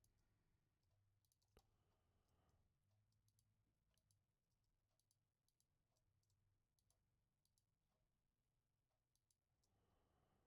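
Near silence: faint room tone, with one small click about one and a half seconds in and a few fainter ticks after it.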